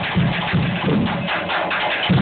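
Live drum-kit solo: drums struck in quick, uneven patterns with cymbal strokes over them.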